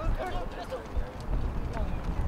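Players' shouts and calls carrying across a soccer pitch, short and broken, over a low rumble of wind on the microphone.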